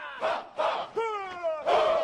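A group of voices shouting together in several drawn-out calls, each falling in pitch, like a battle cry.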